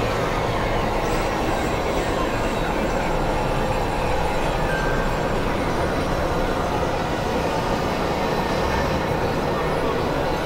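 Dense, steady wall of layered experimental noise music: several tracks running over one another into one continuous rumbling wash with no clear beat.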